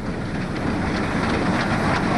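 Steam locomotive running: a steady rush of steam and rolling train that grows slightly louder.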